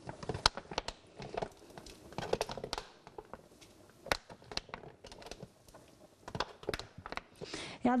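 Irregular clicks and knocks, with crinkling of a thin plastic tub, as minced raw meat is tipped and scraped out of the tub into a pot of cooked rice with a spoon. Near the end the meat starts being stirred into the rice.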